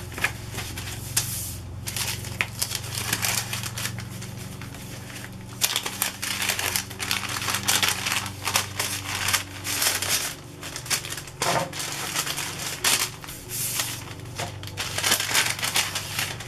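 Clear plastic bag crinkling and paper rustling as a packet of handmade paper craft pieces is handled, with many small crackles. It is busiest from about six to ten seconds in.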